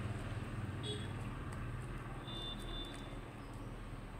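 Low steady rumble of background road traffic, with a faint high tone that comes in briefly about halfway through.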